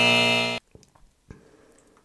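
Game-show style wrong-answer buzzer sound effect: one flat, steady buzzing tone that cuts off sharply about half a second in, marking the guess as wrong.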